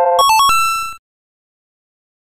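Electronic quiz answer-reveal jingle: a held synth chord gives way to a quick run of bright beeping notes that settles on one held tone, then cuts off suddenly about a second in.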